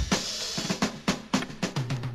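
Drum-kit fill in a recorded funk-jazz track: snare and drum strokes that come faster toward the end, leading into the band.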